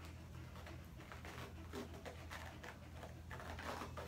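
Faint, irregular crackling and rustling of cohesive bandage (vet wrap) being unrolled and wound around a dog's leg, over a steady low hum in the room.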